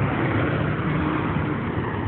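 Steady road traffic noise with a low engine hum.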